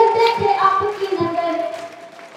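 A woman singing a song into a microphone, amplified through a PA loudspeaker, in long held notes that fade away near the end.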